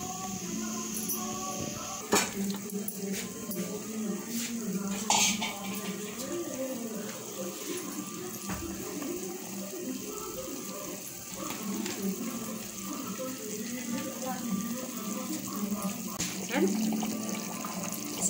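Curry gravy boiling hard in a pot, bubbling steadily, with a couple of sharp clicks, one about two seconds in and one about five seconds in.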